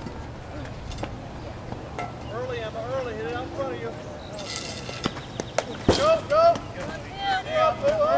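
Young players' voices calling out and cheering across the softball field, with one sharp smack about six seconds in as the pitched softball hits the catcher's mitt.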